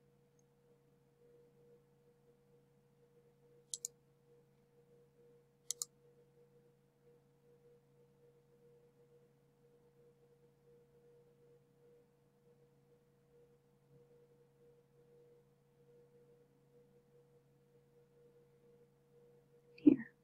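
Two computer mouse clicks about two seconds apart in the first third, each a quick press and release, over a faint steady electrical hum.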